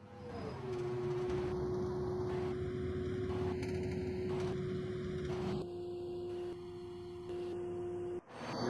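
A steady pure electronic tone, sliding down a little in pitch in the first second and then held, over a low rumble that drops in level a little after the middle.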